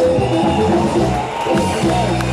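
Latin-style music playing loudly and steadily as a song draws to its close.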